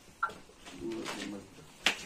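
A bird's low cooing call around the middle, like a pigeon or dove, and a sharp click just before the end.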